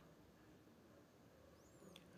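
Near silence: room tone, with a faint, brief high-pitched chirp near the end.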